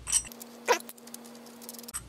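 Faint metal clicks from a Hardinge 5C collet stop being threaded by hand into the back of a steel 5C collet: two short sounds near the start, over a faint steady hum.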